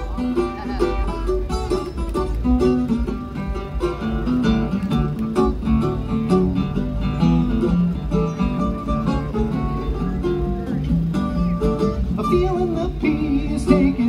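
Live bluegrass instrumental break on acoustic guitar and mandolin, picked notes over strummed chords at a steady tempo.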